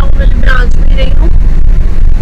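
Car driving on the road, heard from inside the cabin: a loud, steady low rumble of road and engine noise, with brief voices about half a second and a second in.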